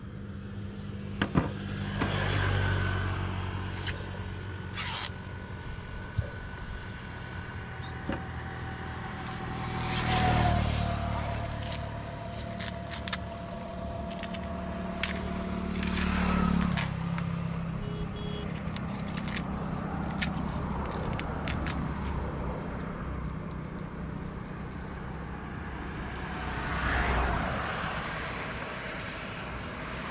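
Road traffic passing close by on a highway: four vehicles in turn swell and fade, with scattered small clicks between them.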